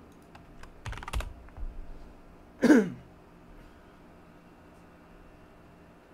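A quick run of computer keyboard and mouse clicks in the first two seconds. Then, a little before the middle, comes a short, loud vocal noise that falls in pitch.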